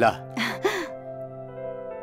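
Soft background film score of held, sustained notes. A short spoken word opens it, followed about half a second in by a breathy gasp of surprise at the gift.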